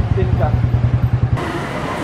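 Motorcycle engine running close by, a low pulsing rumble, with a brief voice over it; about one and a half seconds in it cuts off suddenly to street noise and faint voices.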